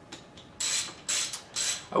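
Socket ratchet clicking in three short bursts as small bolts are turned out of the thermostat cover on a motorcycle engine.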